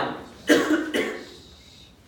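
A man coughing twice in quick succession, about half a second in.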